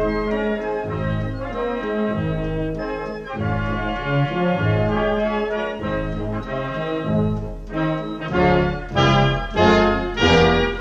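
Military wind band playing a slow funeral march: brass and woodwinds sustain held chords, then sound louder, separate accented chords near the end.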